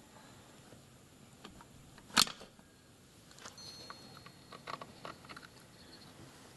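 A pry tool working on the parts inside an open engine case: one sharp metal click about two seconds in, then faint light taps and scrapes of metal parts being handled.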